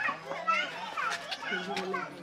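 Children's voices chattering and calling in the background, quieter than close dialogue, with no single clear speaker.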